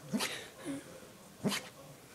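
A sleeping dog giving two short, muffled barks about a second and a half apart, with a faint whimper between them.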